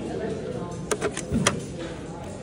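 A few sharp plastic clicks and a short low thump as the lid of a Thermo Scientific X-ray gold analyzer is raised and the sample chamber is handled, about a second in, over background chatter.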